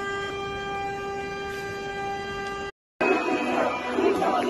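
A vehicle horn sounding continuously on one steady note, cut off abruptly near the end. After a short gap, a crowd shouts in the last second.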